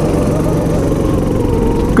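Go-kart engine running steadily under way, heard from the driver's seat.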